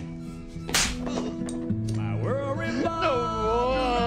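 A single sharp crack of a blow landing on a man, about three-quarters of a second in, over background music with held notes. From about two seconds in, a wavering, drawn-out voice rises and runs to the end.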